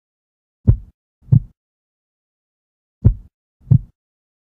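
A slow heartbeat: two double thuds, lub-dub, one pair about a second in and another near the end.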